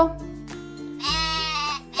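Quena (Andean notched cane flute) sounding one held, steady note about halfway through, over soft background music.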